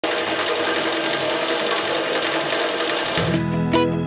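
Drill press running, its bit cutting into steel tubing with a dense, steady mechanical noise. About three seconds in, strummed guitar music starts.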